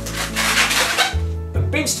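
Background music with a steady bass line, with the faint rubbing of a latex modelling balloon being twisted into a small bubble.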